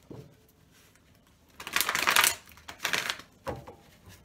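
Tarot cards being shuffled by hand: a longer rustling riffle about halfway through, a shorter one near the three-second mark, then a light knock, likely the deck being squared.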